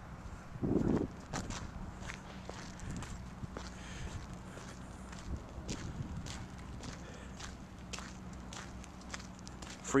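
Footsteps on asphalt, about one step every half second, over a low steady hum, with a brief muffled bump about a second in.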